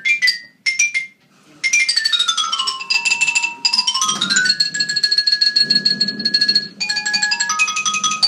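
A xylophone played with mallets in quick runs of struck notes. After a short pause about a second in, a run falls in pitch and then climbs back, a few notes are left ringing, and fast runs start up again near the end.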